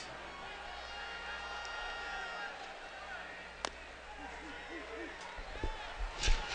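Baseball stadium crowd ambience, a steady murmur, with faint held tones early on and a single sharp knock about three and a half seconds in.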